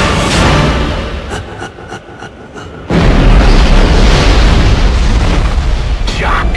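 Dramatic trailer music dies down, with a few short hits. About three seconds in, a sudden deep boom hits and carries into a loud, rumbling swell.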